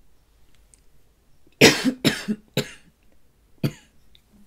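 A woman's short fit of coughing: four coughs, the first and loudest about one and a half seconds in, two more close behind it, and a last one near the end.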